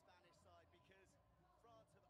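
Near silence with faint voices talking.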